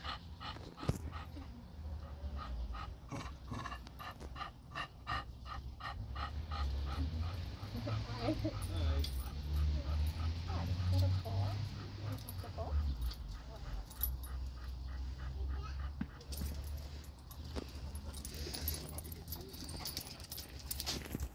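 Dogs playing, with a dog whimpering, and a run of quick, evenly spaced short sounds over the first several seconds; a person laughs about nine seconds in.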